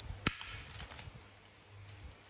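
Handheld bonsai pruning shears give one sharp metallic click with a short ring about a quarter second in, followed by faint handling.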